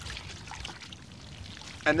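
Water in a plastic bucket moving quietly as a T-shirt is soaked and squeezed by hand.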